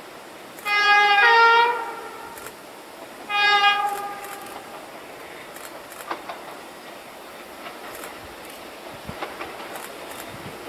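Diesel locomotive's two-tone horn: one blast that steps from the low note up to the high note, then a shorter blast on the low note alone about two seconds later.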